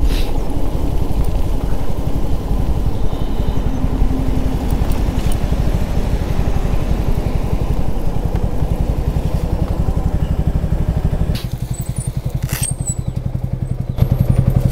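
Suzuki Gixxer SF 250's single-cylinder motorcycle engine running steadily, turning quieter about eleven seconds in.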